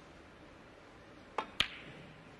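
Two sharp clicks of snooker balls about a fifth of a second apart near the end: the cue tip striking the cue ball, then the cue ball hitting a red.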